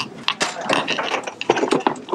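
Rapid, irregular mechanical clicking and rattling, with a background hubbub of voices.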